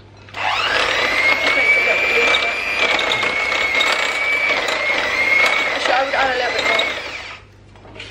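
Electric hand mixer running in a glass bowl of stiff, crumbly cookie dough, a steady motor whine with the beaters rattling through the mixture. It starts just after the beginning and cuts out about half a second before the end.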